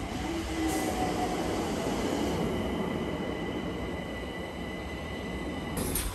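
London Overground train running at the station platform: a steady rumble with a thin, high, steady squeal from the wheels on the rails. The sound stops abruptly near the end.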